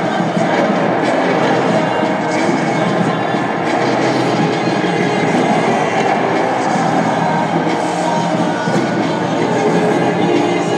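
Loud music played over an arena sound system, mixed with crowd noise, making a dense, steady wash of sound with no pauses.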